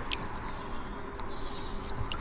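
Quiet outdoor ambience: a low steady background with a faint, high bird call in the second half.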